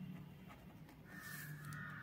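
Faint animal call lasting about a second, starting a little after halfway through, over a faint low hum.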